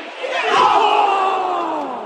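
Football stadium crowd letting out a sudden collective "ooh" that swells quickly and then slides down in pitch and fades over about a second and a half.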